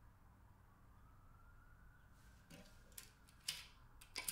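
Metal hip flask being handled, a few short metallic clicks and scrapes in the second half, the sharpest about three and a half seconds in, against a near-silent room.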